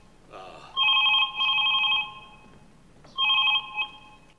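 Telephone ringing with a trilling, double-ring pattern: one pair of rings, a pause, then a second pair that is cut short near the end.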